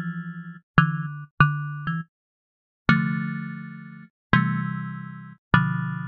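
Dead Duck DDX10 software synthesizer playing an electric-piano preset from a keyboard controller. A few short chords come in the first two seconds, then three longer chords, each struck and left to fade.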